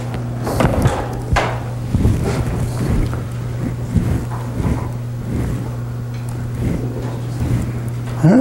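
A steady low electrical or fan hum in a lecture room, with scattered soft clicks and taps of laptop keys being pressed on a frozen computer, and faint murmuring voices.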